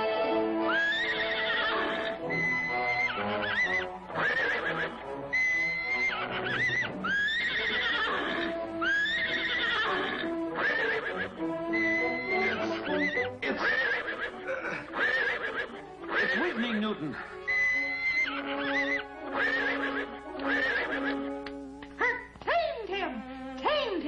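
Cartoon horse whinnies, given to the unicorn, repeating over and over with a wavering rise and fall of pitch, over orchestral background music.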